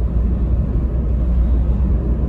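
Car driving along a road: a steady low rumble of tyres and engine heard from inside the car.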